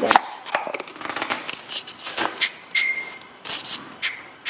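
Wooden matryoshka doll halves being twisted apart, handled and set down on a table: a series of light wooden clicks and knocks, with a brief high squeak near the end.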